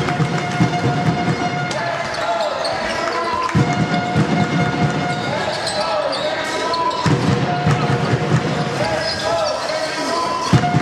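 A basketball being dribbled on a sports-hall floor during play, in runs of repeated bounces, with voices in the hall.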